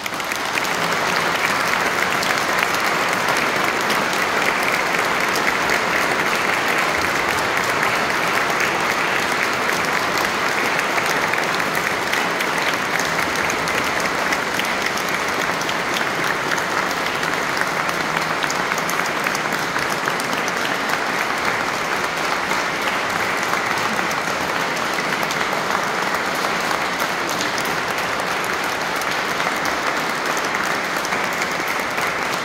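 A church congregation applauding: many people clapping at once, breaking out suddenly and keeping up steadily as one long ovation.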